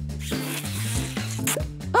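A rasping sucking sound effect through a drinking straw, over background music, with a brief sharper hiss about one and a half seconds in.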